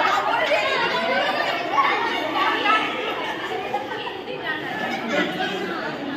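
Several women's voices chatting over one another at once, an indistinct babble of conversation.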